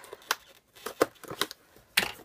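Scissors snipping through packing tape along the seam of a cardboard box: a string of sharp, separate clicks, with a louder click at the very end.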